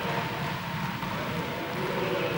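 Steady, echoing din of a sports hall, with no single voice or impact standing out.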